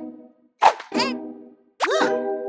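Cartoon sound effects: a sharp pop about half a second in, followed by a short wavering pitched tone, then near the end a quick upward glide that settles into a held tone.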